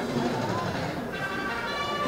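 A voice talking, then music with steady held notes starting about a second in.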